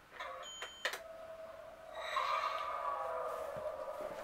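Electronic sound effect from a handheld light-up toy cube: a couple of clicks as it is pressed, then a steady electronic tone, joined about two seconds in by higher, wavering tones.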